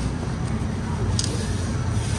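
Steady low hum of room noise, with a brief paper crinkle about a second in as a tissue is folded around a plastic iced-coffee cup.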